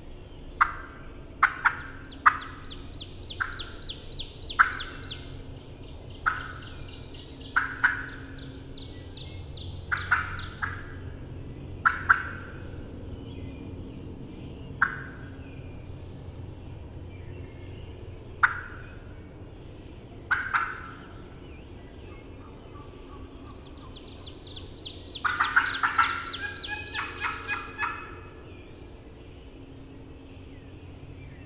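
Turkey calling: sharp single yelps and clucks at irregular intervals, some with a high trill, and a faster, denser run of calls near the end.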